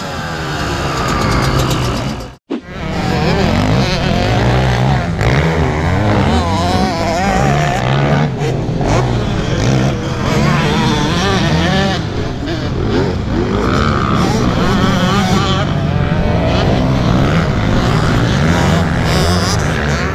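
Dirt-bike engines revving on a motocross track, their pitch rising and falling over and over. The sound cuts out briefly about two and a half seconds in.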